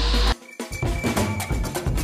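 Carnival parade music with loud, fast percussion, sharp strikes about five a second over a low beat. It starts abruptly about two-thirds of a second in, after a steady low hum cuts off.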